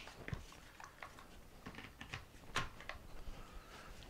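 Faint clicks and knocks of hard plastic as a DeWalt FlexVolt battery pack is handled and fitted onto the DeWalt 60V trimmer's power head, the loudest click about two and a half seconds in.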